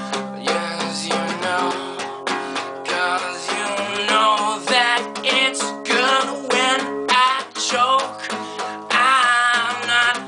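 A man singing with vibrato over a strummed nylon-string classical guitar, the voice coming in strongest in the second half, in phrases with short breaks.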